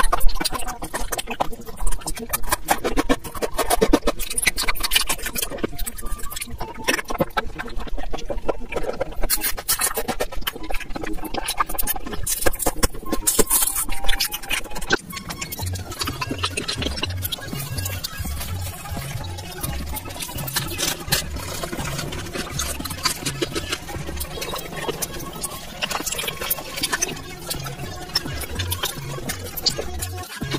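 Close-miked mouth sounds of licking and biting candy and jelly sweets: a dense run of wet clicks and smacks. Background music with a steady low beat comes in about halfway through.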